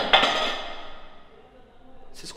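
A sudden bang of an object falling over, then a ringing echo that dies away over the next second or so.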